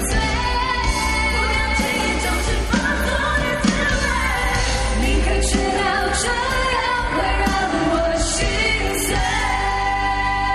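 A live pop band with several singers on handheld microphones, singing over drums, electric bass and keyboards, with cymbal hits along the way.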